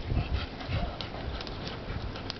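Australian shepherd digging in loose garden soil with its front paws: a quick, irregular run of scraping strokes, with soil being flung aside.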